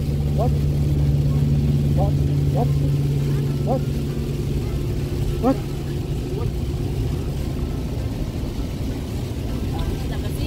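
Inside a car driving on a wet highway in heavy rain: a steady low drone of engine and tyres on the wet road, with a faint hiss of rain on the glass. A few short rising chirps come through in the first half.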